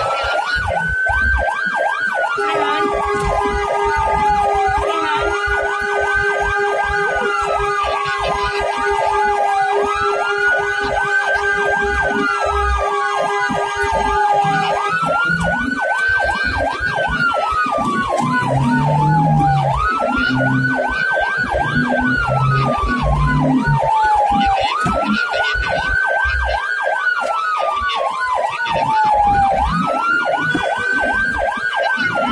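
Ambulance siren wailing on the responding vehicle, each cycle rising quickly, holding briefly, then falling slowly, repeating about every five seconds, with a faster warbling sweep layered over it. A second steady siren tone is held alongside from about two seconds in until about halfway through.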